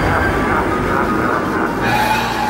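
Intro sound effect: a loud rushing noise with faint sweeping, wavering tones, giving way near the end to music with steady held notes.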